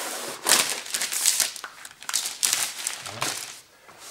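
Plastic release film being peeled off a self-adhesive Wineo Silent Premium underlay mat, crinkling and rustling in several surges that die away near the end.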